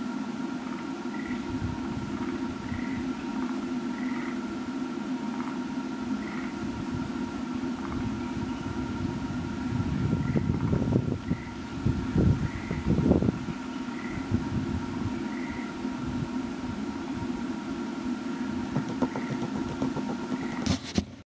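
Steady low hum with wind rumbling on the microphone in gusts, loudest about halfway through. A faint short note repeats about every second and a half.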